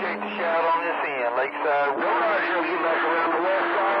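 Voices on CB channel 28 skip coming through a receiver's speaker, narrow-band and too garbled for words to be made out. Steady tones run under the voices: a low one that stops about half a second in and a higher one from about two seconds in.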